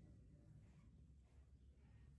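Near silence: a faint, steady low background hum.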